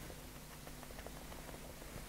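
Faint room tone: a low, even hiss with a faint steady hum.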